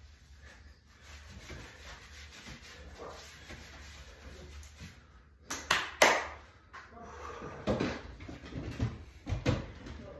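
Chalked hands clapping together about three sharp times just past the middle. This is followed by rustling, scuffs and knocks as a lifting belt is put on and fastened.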